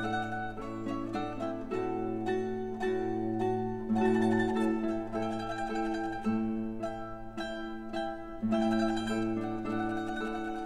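A mandolin trio playing classical music: quick runs of plucked notes over held lower tones.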